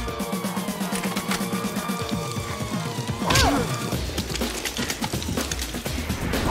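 Dramatic film score music over scattered crashes and small clattering impacts of falling debris, with a louder falling sweep about three seconds in.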